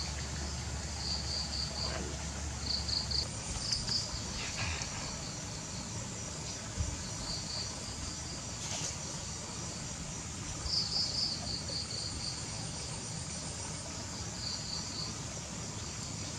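Insects chirping in short pulsed trills that come every second or two, over a steady high insect hiss.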